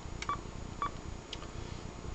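Kenwood TS-440S transceiver giving two short, mid-pitched key beeps about half a second apart as its front-panel keys are pressed to change frequency, with a few faint button clicks.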